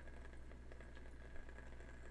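Quiet room tone with a steady low hum; one faint tick about one and a half seconds in.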